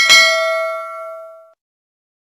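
Notification-bell sound effect of a subscribe-button animation: one bright bell ding with several overtones, fading over about a second and a half and then stopping.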